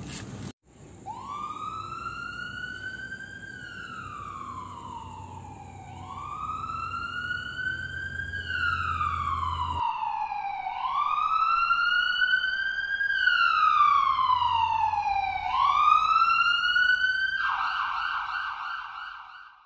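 Emergency-vehicle siren wailing in slow rises and falls, about four sweeps, getting louder in the second half. Near the end it switches to a rapid warble.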